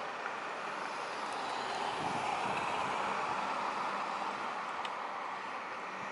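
Road traffic going by, a steady rushing noise that swells a little through the middle as a vehicle passes.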